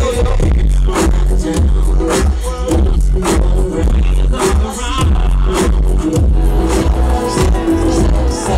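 Live R&B music over a concert sound system: a heavy bass line under a steady beat of about two strokes a second, with a melody on top.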